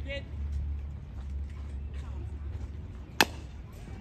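One sharp, loud crack of a bat hitting a pitched baseball about three seconds in, over a steady low rumble.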